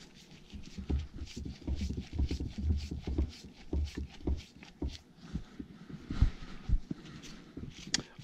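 Gloved hands working the metal parts of a Farmall H hydraulic lift pump on a wooden workbench: an irregular run of small clicks, taps and dull knocks as the spring-loaded pump pieces are squeezed together and started into place.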